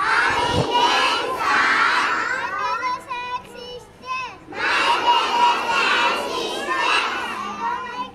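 A large group of schoolchildren calling out together, many young voices at once, in two long stretches with a brief drop about four seconds in.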